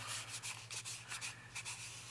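Paper rubbing and rustling as aged sheets are slid out of a paper pocket in a handmade junk journal.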